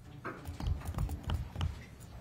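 A series of irregular, moderately loud knocks and thumps, about half a dozen over a second and a half, unevenly spaced.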